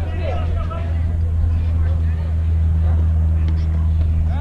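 A steady, low engine hum, with a higher droning tone joining in about a second and a half in. Brief voices come at the start.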